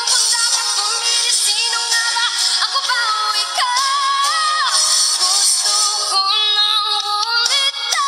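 A woman singing a slow song into a microphone over musical backing, holding long notes that slide up and down in pitch.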